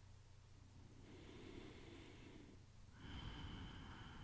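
Near silence with faint, soft breathing: one breath about a second in and another, slightly louder, about three seconds in.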